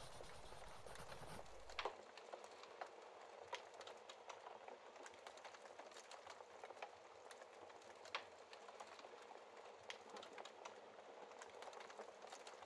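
Fireplace fire crackling softly: a faint steady hiss with scattered pops and snaps, the sharpest about two seconds and eight seconds in. A brief, fuller rustling sound plays at the start and cuts off just under two seconds in.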